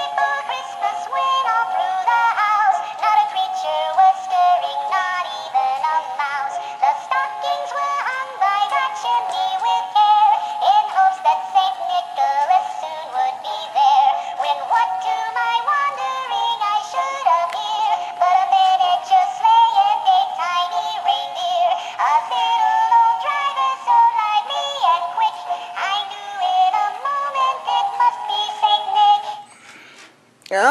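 Animated plush Christmas mouse toy playing a Christmas song with a synthetic-sounding singing voice through its small built-in speaker, with no bass. The song stops right at the end.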